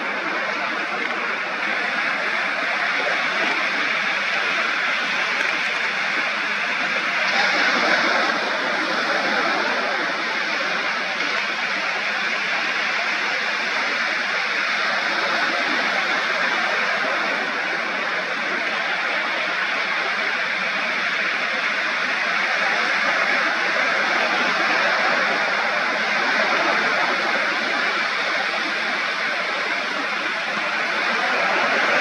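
Ocean surf washing onto a beach: a steady rushing noise that swells briefly about seven seconds in.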